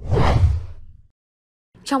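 A transition whoosh sound effect: one rush with a deep low end that swells at once and fades out within about a second.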